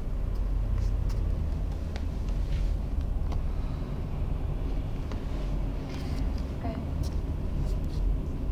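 Steady low background rumble with scattered small clicks during a silent pause in the room.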